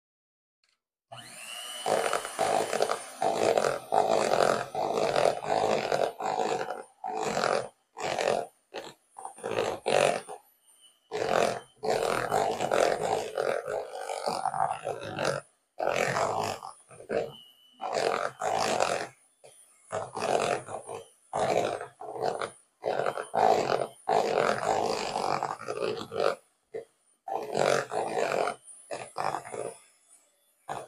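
Electric hand mixer beating thick cake batter in a plastic bowl, starting about a second in. It runs in stretches broken by many short pauses as the flour and cocoa are worked into the creamed butter mixture.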